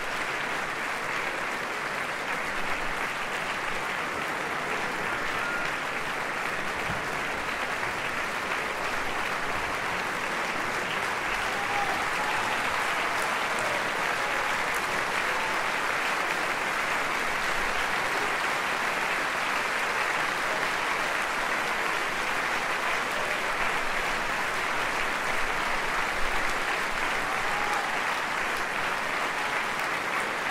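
A large concert-hall audience applauding steadily, a little louder from about halfway through.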